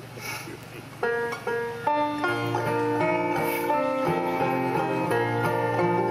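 Acoustic bluegrass string band starting a song's instrumental intro: plucked guitar and mandolin notes come in about a second in. Upright bass joins and the full band is playing by about two seconds.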